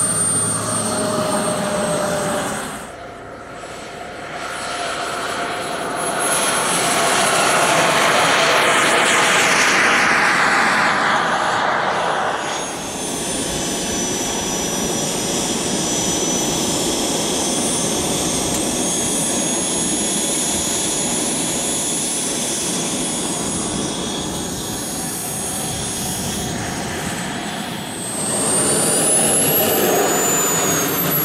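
Miniature turbine engines of large radio-controlled scale model jets: a steady high-pitched whine, with a loud jet pass swelling about 7 seconds in and cutting off about 12 seconds in. Near the end a turbine's whine rises in pitch.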